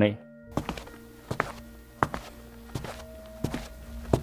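Footsteps sound effect: slow, evenly paced hard steps, about six of them, beginning about half a second in, over a sustained background music drone.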